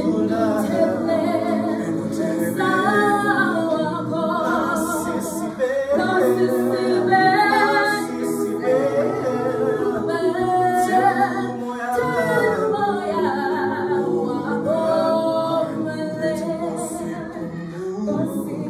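Mixed choir of men's and women's voices singing a cappella in parts, in phrases with short breaks about six and twelve seconds in.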